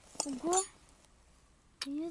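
A short rising vocal sound and a couple of light clicks in the first half-second, then quiet until speech starts near the end.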